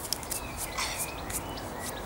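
Birds chirping: a few short, high calls, some sliding down in pitch, over a steady outdoor hiss, with a few small clicks.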